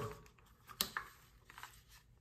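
A few faint, short plastic clicks and taps as a Wildgame trail camera's housing is handled and turned in the hand, the loudest about a second in.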